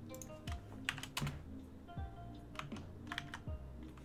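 Computer keyboard typing in short bursts of quick keystrokes, over background music with a steady beat.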